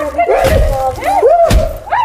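Two dull thumps about a second apart, blows landing on a man pinned on the ground, with a man's drawn-out cries sliding up and down between them.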